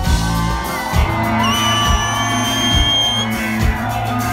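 Live band playing upbeat Persian pop with a steady drum beat, electric guitar and singers. A long high note is held over the band from about a second and a half in.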